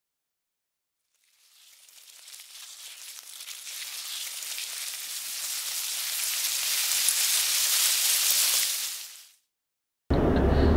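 Intro sound effect for a logo animation: a hiss that swells gradually for about seven seconds, then fades out quickly.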